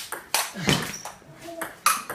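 Table tennis ball in a rally, sharp clicks about every half second as it is struck by the paddles and bounces on the table.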